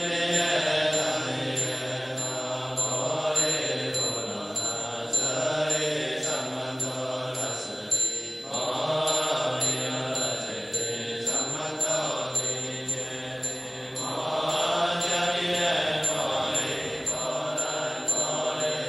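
Music track of a chanted mantra over a steady low drone, with a light tick keeping an even beat.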